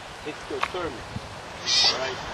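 Galápagos sea lion giving short bleating calls that fall in pitch, then a brief loud hiss near the end.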